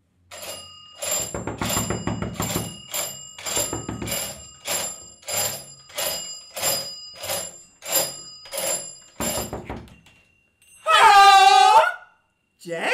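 Doorbell ringing over and over, about sixteen rings at nearly two a second, stopping after about nine seconds. Near the end a loud voice calls out with rising and falling pitch.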